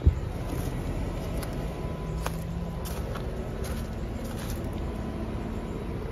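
2014 Lennox Merit outdoor air-conditioning condenser running, heard close over its fan grille: a steady hum of the condenser fan and its LG compressor, with a brief low knock at the very start.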